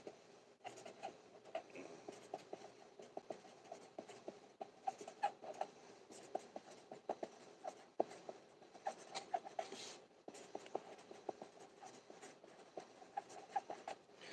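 Faint, irregular scratching and small clicks of hands working close to the microphone, with no steady rhythm.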